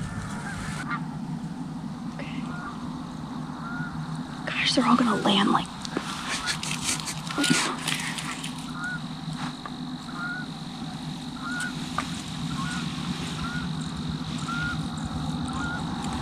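Wild geese honking, a run of short, faint honks about once a second, with a louder burst about five seconds in and a few clicks of handling noise near the middle.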